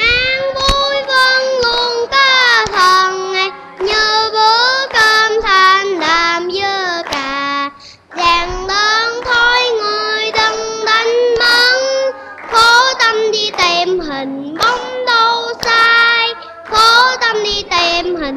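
A young boy singing a cheerful song loudly into a microphone, phrase after phrase, with a brief pause for breath about halfway through. An audience claps along in time.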